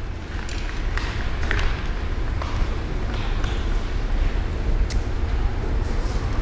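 A roll of adhesive tape being handled and strips pulled from it, with a few faint clicks, over a steady low rumble.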